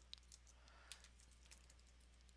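Faint computer keyboard typing: a few scattered, light keystrokes.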